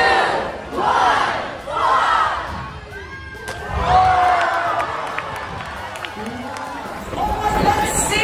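Large crowd of spectators shouting and cheering, then a loud cheer as a man belly-flops into a swimming pool with a big splash about four seconds in.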